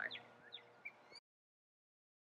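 Faint outdoor background with two brief bird chirps, cutting off suddenly a little over a second in to total silence.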